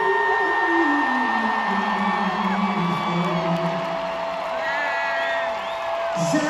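Live arena concert sound heard from the seats. A singer's voice slides up into a long held note, then steps down in a descending run, and settles into another long held note over the band on the PA. The crowd whoops as well.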